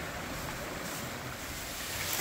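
Steady rushing of a small creek cascading over stepped rock ledges.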